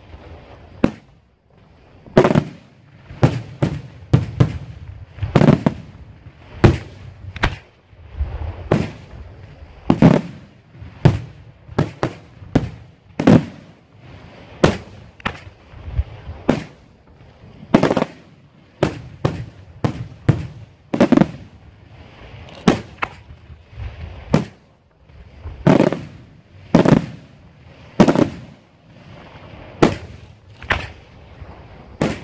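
Daytime fireworks shells bursting overhead in a long, irregular series of sharp bangs, roughly one a second, each followed by a short rumbling tail.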